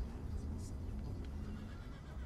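Film soundtrack ambience: a steady low rumble with a few faint, brief higher sounds.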